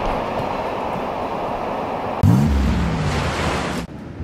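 Surf washing onto the beach, a steady rushing wash. About two seconds in, a louder low rumble with a tone that rises and then falls joins it, and the sound cuts off abruptly near the end.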